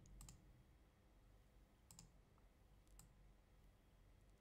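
Near silence with a few faint computer clicks: a quick pair just after the start, then single clicks about two and three seconds in.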